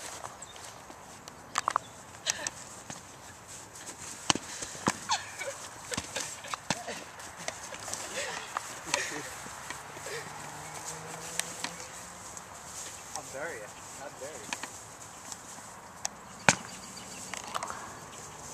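Foam-padded sparring swords striking a shield and each other: irregular sharp whacks scattered throughout, the loudest near the end, with footsteps scuffing on dry ground.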